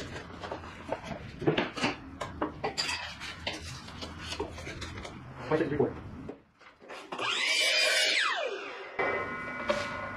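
Light clicks and taps of a steel tape measure and a pencil being worked along a pine board. About seven seconds in, a louder whir with shifting pitch runs for about two seconds.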